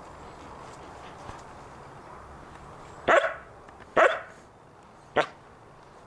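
A dog barking three times, short sharp barks about a second apart, starting about halfway through, the first two the loudest.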